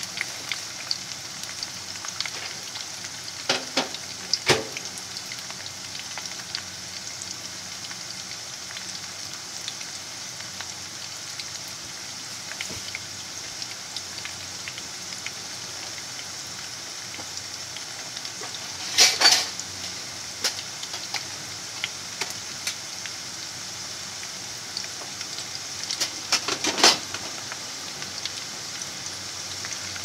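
Potato strips frying in shallow oil in a frying pan, still pale at an early stage: a steady sizzle with small crackles throughout. Louder bursts of crackling come about four seconds in, around nineteen seconds and around twenty-six seconds.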